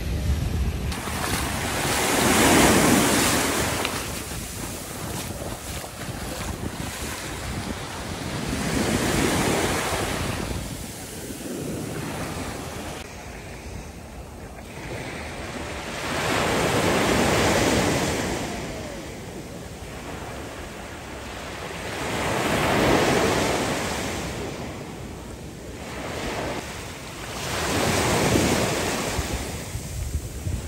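Small sea waves breaking and washing up a sandy beach: five surges of surf, each swelling and fading over a few seconds, about every six seconds.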